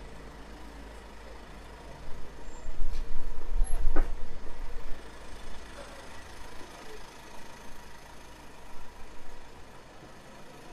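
A delivery truck's engine idling close by on a city street, a steady low rumble with a faint hum. The rumble swells loudly about two seconds in and eases off after about five seconds, and a single sharp click or knock comes about four seconds in.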